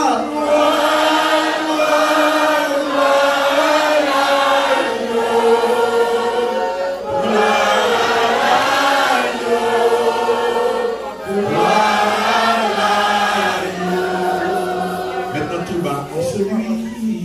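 Church choir singing a worship song together, in long held phrases of a few seconds each.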